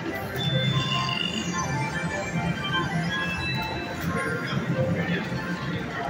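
Buffalo Gold Revolution slot machine playing its free-games bonus music, with electronic chimes and jingles as the bonus spins run.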